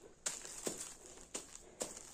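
A few faint, irregular clicks and rustles of handling as a plush rabbit-ear headband is gripped and lifted off the head.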